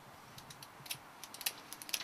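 A run of light, irregular clicks that grows busier towards the end.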